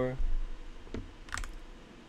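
A few computer keyboard keystrokes, one about a second in and a short cluster just after, then quiet.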